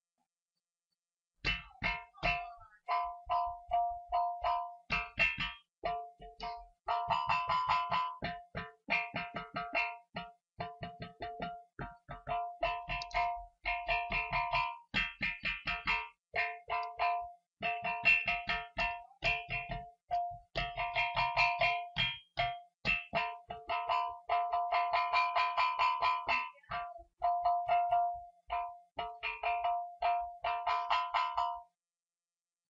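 Impaktor iPad drum app set to its metal drum, turning hand taps on the table into synthesized metallic drum strikes: quick runs of ringing, pitched hits, several a second, starting about a second and a half in.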